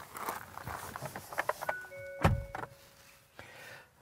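A car door opened and someone climbing into the seat, with rustling and small clicks, then a solid door thunk about two seconds in. A few steady electronic tones sound together around the thunk.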